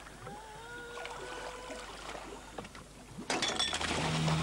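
Boat-side sound on open sea: a faint tone rises and then holds steady for about a second and a half over a low wash of noise. Near the end comes a short, loud rush of noise.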